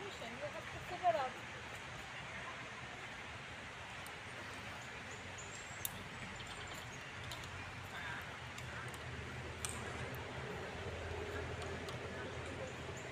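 Outdoor ambience: steady background noise with faint bird chirps, a brief voice about a second in, and two sharp clicks near the middle.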